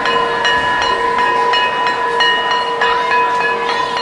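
Title-card sound effect: several steady ringing tones held over a regular clicking beat about three times a second.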